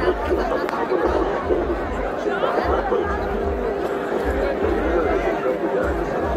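A large crowd chattering with music mixed in, a steady din of many voices.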